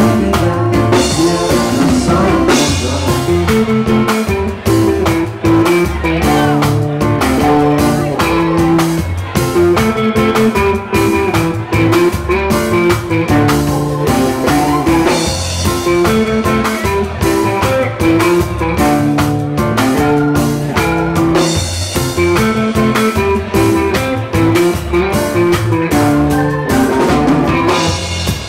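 A live band playing an instrumental passage of a reggae-rock song, with electric guitar to the fore over bass guitar and a drum kit keeping a steady beat.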